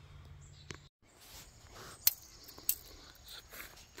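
Quiet outdoor background with a few sharp, isolated clicks and taps. The sound drops out completely for a moment about a second in.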